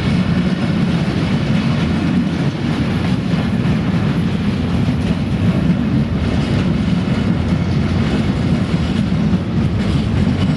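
Freight train of covered hopper wagons rolling past close by: a steady, loud noise of steel wheels running on the rails.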